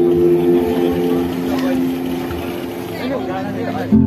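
Instrumental accompaniment of a live song holding steady chords through a loud PA, changing chord about a second in and dying away near the end, with voices over it in the second half.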